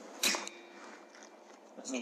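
A single sharp crack from a .22 Air Arms S510 Extra FAC pre-charged air rifle firing a follow-up shot, followed by a faint ringing tone lasting about a second. A voice starts near the end.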